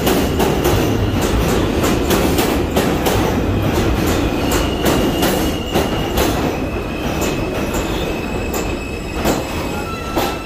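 New York City subway train running into the station and slowing: a heavy rumble with the rhythmic clack of wheels over rail joints that spaces out as it slows. A thin high wheel squeal comes in about halfway through.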